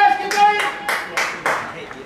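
A woman's high, drawn-out shout held for about a second, over five sharp handclaps from the touchline.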